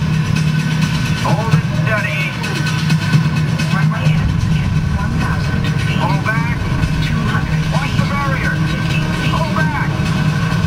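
Motion-simulator ride soundtrack of a spacecraft landing: a steady low rumble as the craft slides along the runway, with short bending high sounds over it every second or two.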